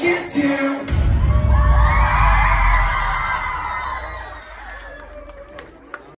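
Live pop music breaks off about a second in, and a large crowd cheers and screams, swelling and then slowly dying away.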